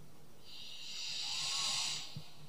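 A Quran reciter's long, deep in-breath drawn close to the microphone between phrases of recitation, a soft hiss that swells for about a second and a half.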